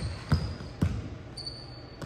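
A basketball bouncing on a hardwood gym floor: three dribbles in the first second, then quiet.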